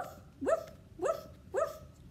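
A woman imitating a dog in song: four barked "woof"s, about half a second apart, each rising in pitch at the start.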